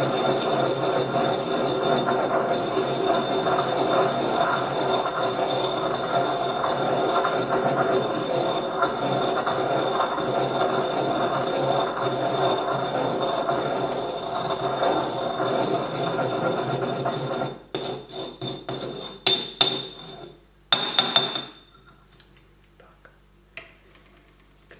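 Porcelain pestle grinding granulated sugar in a porcelain mortar, a steady gritty rubbing and scraping with a faint ringing of the bowl, crushing the crystals to a powder. The grinding stops about three-quarters in and is followed by a few sharp knocks and clinks.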